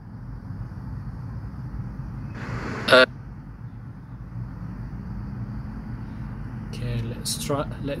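Steady low background rumble, with a short clipped snippet of a man's voice about two and a half seconds in and speech starting again near the end.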